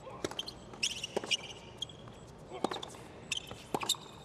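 Tennis rally on a hard court: a series of sharp racket-on-ball hits and ball bounces, with short shoe squeaks on the court surface between them.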